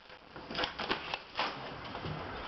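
A few sharp clicks and light rattles as a back door fitted with window blinds is unlatched and swung open.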